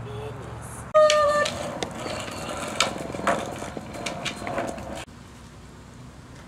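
A woman's voice: a high, drawn-out call about a second in, followed by scattered clicks and knocks.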